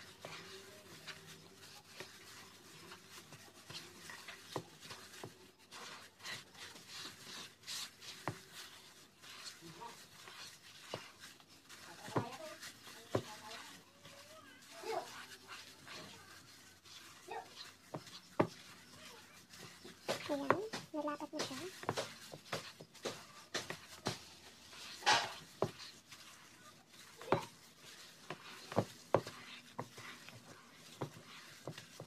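A gloved hand kneads a stiff pastillas dough of powdered milk and condensed milk in a plastic bowl, making scattered rubbing, crinkling plastic-glove noises and small clicks and knocks against the bowl. Faint voices are heard now and then in the background.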